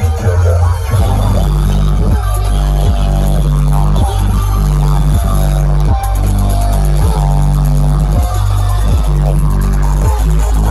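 Electronic dance music played very loud through huge stacked sound-system speakers, with a heavy sub-bass and a bass line that steps up and down in a repeating pattern over a steady beat.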